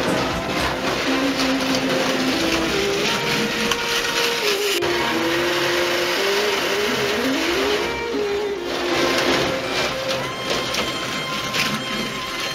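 HO slot cars with small electric motors running around the track, a whine that rises and falls in pitch as the cars speed up and slow down.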